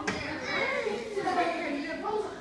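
Children's voices talking and chattering, with a brief click right at the start.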